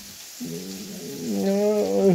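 A man's voice making a long, drawn-out vocal sound without clear words, beginning about half a second in, rising in pitch and then held level.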